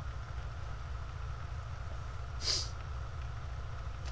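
Homemade Bedini energizer pulse motor running steadily: a low hum from the spinning rotor and pulsed coils, with a fainter higher tone above it. A short hiss comes about two and a half seconds in.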